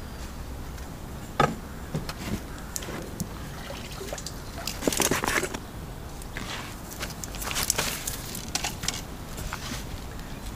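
Splashing and trickling water as a hooked bream is drawn to the bank and lifted out of the lake in a landing net, the loudest splashing about five seconds in, with a few smaller splashes before and after.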